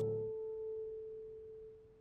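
A single held musical note, a clear pure tone that fades away slowly over about two seconds, used as a sound-effect sting in the soundtrack.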